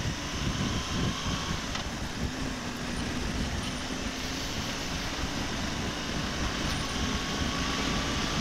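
BMW R1200GS flat-twin engine running steadily as the motorcycle rides along a road, with wind and road noise.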